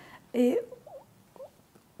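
A woman's short voiced syllable, a brief vocal filler, about a third of a second in, followed by two faint, very brief squeaky mouth or voice sounds.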